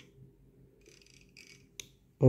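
Near silence: room tone with a faint steady low hum and one short click near the end.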